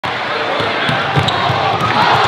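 A basketball being dribbled on a hardwood gym floor, a bounce about every third of a second, over the steady noise of a crowd's voices.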